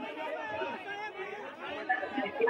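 Crowd chatter: several men's voices talking over one another in a commotion.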